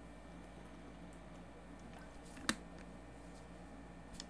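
Faint steady room noise with no noise reduction applied, as a man drinks quietly from a plastic water bottle; a single sharp click about two and a half seconds in.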